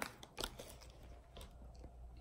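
Faint handling noises from sorting through gift bags and packaging: a few small clicks and crackles, the sharpest about half a second in.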